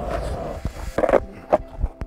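Skateboard wheels rolling on asphalt, then a few sharp knocks of the board, the loudest about a second in, as a fakie bigspin is tried and the rider comes off the board.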